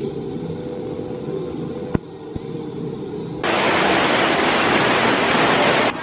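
Steady rushing noise, muffled for the first three and a half seconds, with a single sharp knock about two seconds in, then opening up into a bright, even hiss that cuts off suddenly just before the end.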